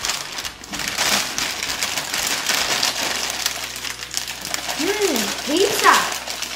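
Plastic snack packets crinkling and rustling as a large multipack bag of Arnott's Shapes is pulled open and a small inner packet is taken out and handled. A short vocal sound rises and falls near the end.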